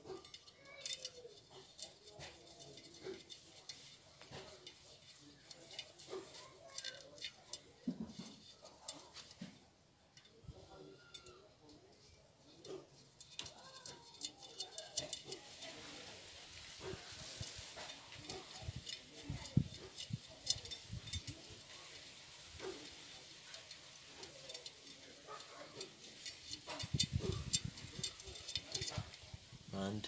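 Faint, scattered light metal clicks and ticks of steel bicycle spokes knocking against each other, the rim and the hub as they are threaded in by hand, with distant voices behind.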